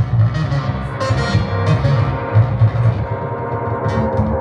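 Electronic music played live on beat-making gear: a heavy bass line under held, distorted synth tones with effects.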